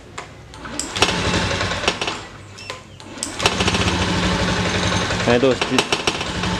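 Honda Beat FI scooter's single-cylinder fuel-injected engine being started: it catches about a second in, falters, then picks up again about three seconds in and keeps running. It starts hard and will not hold an idle or take throttle without dying, a fault the mechanic traces to the fuel injector.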